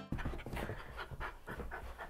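A dog panting quickly and regularly, close to the microphone.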